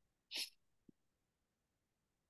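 A person's short puff of breath about a third of a second in, then near silence with one faint tick.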